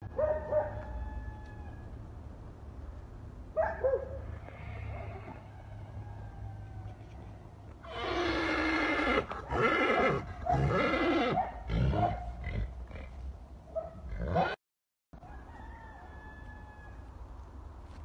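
Donkey braying: a loud bray in several alternating breaths, starting about eight seconds in and lasting about three and a half seconds.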